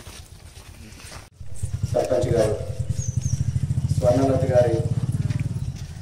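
A vehicle engine running with a fast, even low pulse, starting abruptly about a second in, with voices talking over it.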